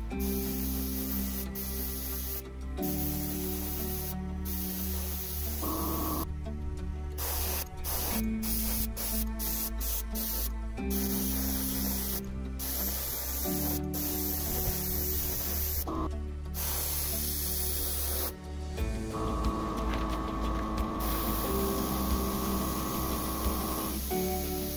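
Compressed air and paint hissing from an Iwata LPH 80 mini spray gun, sprayed in bursts that stop briefly many times as the trigger is let off. Background music with held chords plays underneath.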